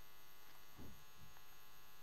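Steady low electrical mains hum with a faint buzz on the recording. A faint short low sound comes about a second in.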